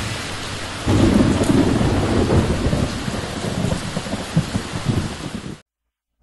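Thunderstorm sound effect: steady rain with a rumble of thunder that swells about a second in and slowly fades, then cuts off suddenly near the end.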